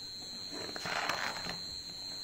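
Soft rustle of a picture book's paper page being handled and turned, about a second in, over a faint steady high-pitched whine.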